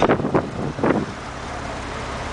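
Porsche 911 Carrera S Cabriolet's flat-six engine as the car pulls away past the camera, with a few short bursts of sound in the first second, then settling to a steady, lower drone.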